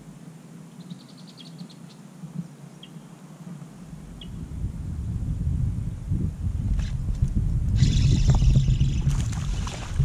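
A low rumble builds from about four seconds in. From about eight seconds, loud splashing takes over as a largemouth bass strikes a topwater walking bait and thrashes at the surface on the line.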